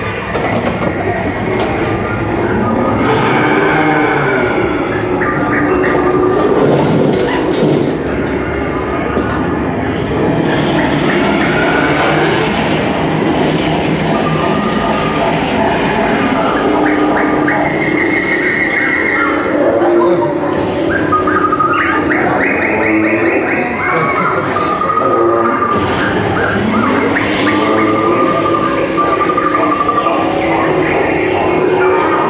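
The attraction's loudspeaker soundtrack in a dark dinosaur scene: music and held pitched calls over a steady rumbling bed, with rapid trilling calls now and then.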